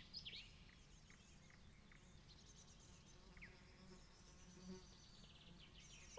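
Near silence: faint outdoor ambience of short, high chirps and a light buzzing, slightly louder at the very start.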